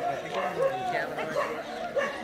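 A dog barking in a quick run of short barks, four or five in two seconds.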